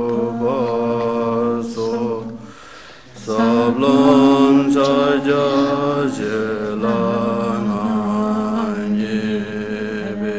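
Several voices chanting a Buddhist prayer text together on a nearly steady pitch, with low and higher voices together. There is a short pause for breath about three seconds in.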